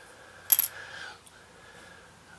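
A short, bright clink of a small hard object knocked or set down on the workbench about half a second in, a few quick clicks in a row, amid the handling of plastic model parts.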